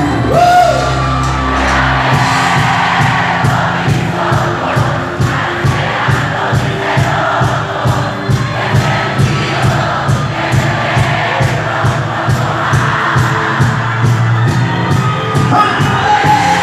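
Live cumbia band playing with a steady beat (keyboards, drums, hand percussion and accordion), with a large crowd singing and cheering along.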